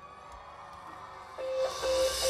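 Live band music dropping to a near-pause after the sung line, then swelling back in a little past halfway with a held high note and a bright shimmering wash.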